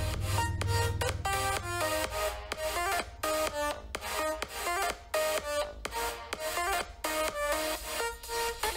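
Electronic dance music playing loud through the Microsoft Surface Duo's single top-firing phone speaker: choppy synth chords in a steady, quick rhythm.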